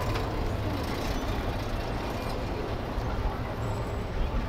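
Steady low rumble and wind buffeting on the microphone while moving along an open paved promenade, with no distinct events standing out.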